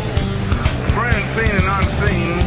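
Rock music with a steady, driving drum beat and bass. From about halfway in, a high wavering line bends up and down over it, like a singing voice or a bent lead guitar.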